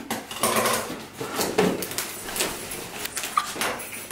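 Cardboard shipping box being opened by hand: irregular rustling, scraping and sharp clicks of the flaps and packing inside.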